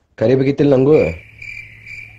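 A cricket chirping in a steady high trill begins about a second in, after a brief spoken line: the comedy 'awkward silence' crickets effect.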